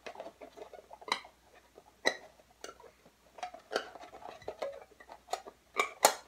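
Scattered small clicks and taps, about eight in six seconds at uneven spacing, as a wooden floating bridge is slid sideways under the loosened strings of a banjo ukulele and knocks against the strings and the drum head.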